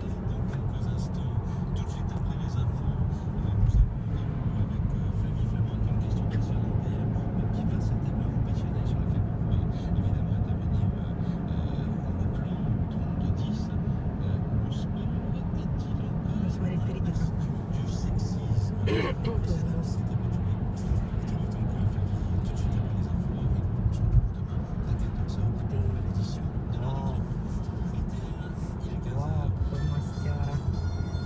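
Car cabin noise while driving at speed: a steady low drone of engine and tyres on the road, with two brief low thumps, one a few seconds in and one about two-thirds of the way through.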